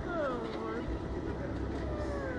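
A girl's wordless vocal sound that falls in pitch over about a second, with a shorter falling one near the end, over a steady low hum.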